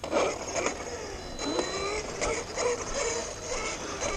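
Losi DBXL-E 1/5-scale electric RC buggy running on 8S LiPo power: its brushless motor and geared drivetrain whine, the pitch rising and falling with the throttle as it drives off.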